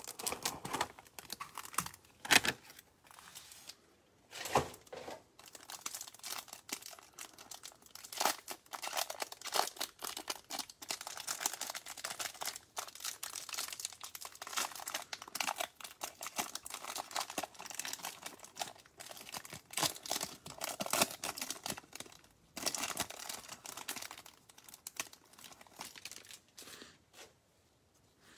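Cellophane wrapper on a stack of trading cards being torn open and crinkled by gloved hands, an irregular crackling with a few sharper snaps in the first seconds.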